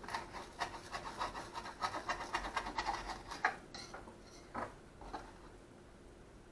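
A knife sawing through a toasted, griddled sandwich on a wooden cutting board: a quick run of short scraping strokes through the crisp bread crust for about three and a half seconds, then a few softer scrapes.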